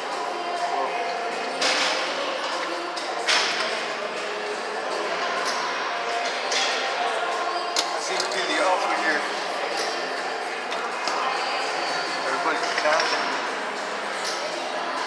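Busy gym room noise: background voices and music in a large hall, with several sharp metallic clanks of gym equipment.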